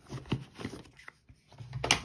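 Handling noise from a camera sling bag being emptied by hand: soft rustles and light taps as gear is lifted out of its padded compartments, with one sharper click near the end.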